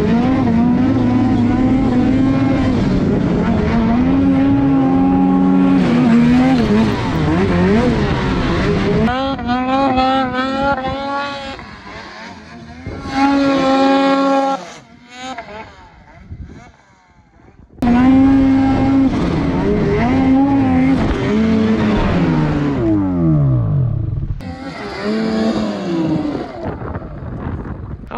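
Two-stroke snowmobile engines revving hard, their pitch climbing and falling with the throttle. The engine sound drops away for a few seconds a little past halfway, then revs up loudly again.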